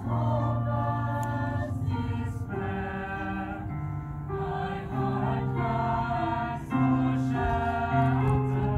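A mixed youth choir singing in harmony, with long held chords that change every second or two.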